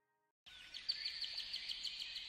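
Faint birdsong: a rapid run of short, high chirps over a light hiss, coming in suddenly about half a second in after a moment of silence.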